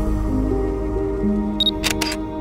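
Soft background music with long held notes. Near the end a camera-shutter sound effect comes in: a short high beep, then two quick clicks.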